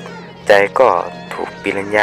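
A voice narrating in Thai over a horror film's soundtrack. A brief high, wavering squeal fades out in the first moment. A steady low hum runs underneath.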